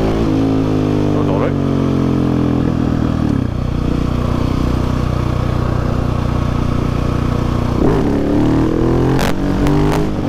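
Husqvarna 701 Supermoto's single-cylinder four-stroke engine running under way, with wind noise on the helmet microphone. The engine note shifts about three and a half seconds in and again near eight seconds. A few sharp clicks come near the end. The owner says the exhaust sounds wrong and needs repacking.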